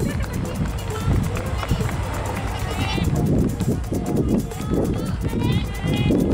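Voices of people talking and calling out, over a steady low rumble.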